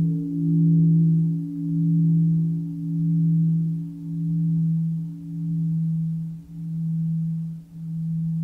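A large Buddhist temple bell ringing on after being struck, its low hum pulsing in slow swells about once a second and gradually fading. It is the bell sounded between verses of a Vietnamese bell-invitation chant.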